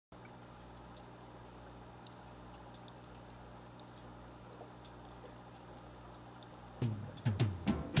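Faint aquarium water sounds: a low steady hum with light trickling and occasional drips. Near the end, much louder swing-style music starts.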